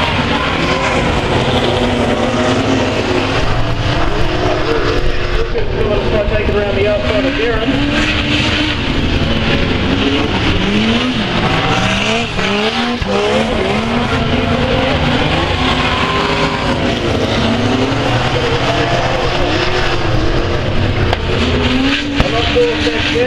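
A pack of speedway saloon race cars running on a dirt oval, engines revving up and down in pitch as the cars go through the turns, over a constant drone of the whole field.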